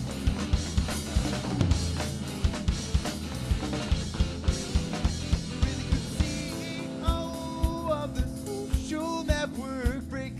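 Live rock band playing, driven by a drum kit: regular bass-drum and snare hits, about three a second, under the electric guitar. In the second half, held, wavering notes rise above the drums.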